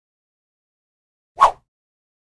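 Dead silence broken once, about one and a half seconds in, by a short sound effect from a logo outro animation.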